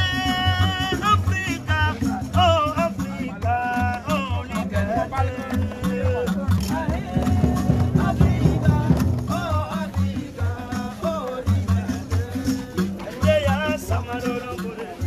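Music with a steady low beat and a singing voice holding long, wavering notes.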